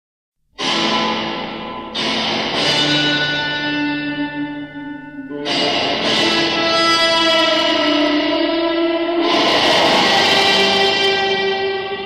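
A 1970 Italian rock track opening after half a second of silence with long sustained electric guitar chords through effects, a new chord coming in about every two to four seconds, four in all, with no drums yet.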